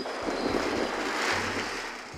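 Steady rushing noise of wind buffeting the phone's microphone, swelling and easing gently.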